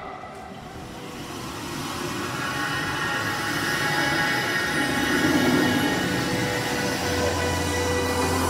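Show sound effect played over a PA system: a rushing, whooshing build-up layered with steady electronic tones, swelling steadily louder. A low hum joins near the end as it leads into music.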